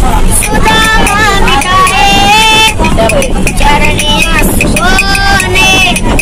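A boy singing a Hindi film song in long, wavering held notes, with sharp clicks from clappers in his hands. A bus engine rumbles underneath.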